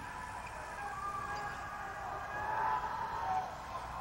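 Spectator crowd noise in an indoor sports arena: a steady background of voices with a few faint, drawn-out tones wavering up and down through it.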